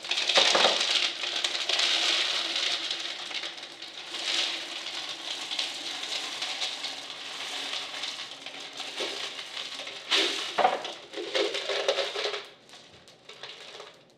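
Small glass marbles poured from a plastic jar into a glass vase packed with rocks and marbles: a dense clattering of glass on glass and stone. It comes in surges, loudest at the start and again about ten seconds in, then thins to scattered clicks near the end as a few marbles bounce out onto the table.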